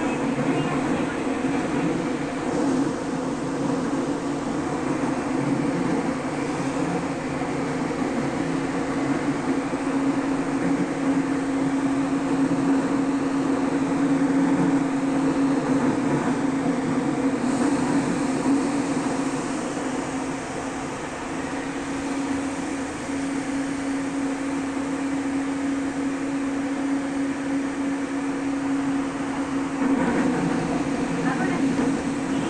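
Nagoya subway 3000 series train running between stations, heard from inside the car: a continuous rumble of wheels on rail with a steady hum that swells and eases as it goes.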